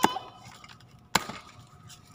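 Cardboard carton being cut open with a box cutter: two sharp snaps about a second apart.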